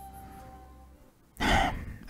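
Soft background music with a held tone fades out about halfway, then a short breathy sigh from the narrator's voice, the loudest sound here.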